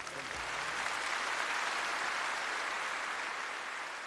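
A large audience applauding steadily as a song ends.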